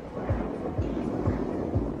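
Background music with a steady kick-drum beat, about two beats a second.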